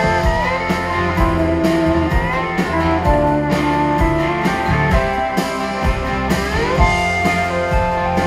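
A rock band playing live, an instrumental passage of a country-rock song with drums, bass and electric guitars, and a lead line that slides up and down between notes.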